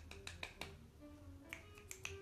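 Faint, irregular finger snaps and clicks from fidgeting hands, with a few faint short tones underneath.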